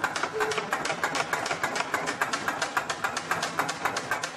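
Rapid, steady rattling clatter of about ten knocks a second, with a short bit of voice near the start.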